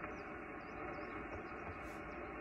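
Steady hiss of band noise from a Yaesu FT-991 transceiver's speaker, on receive between calls while the other station has not yet replied. The hiss is cut off sharply at the top, as narrow single-sideband audio is.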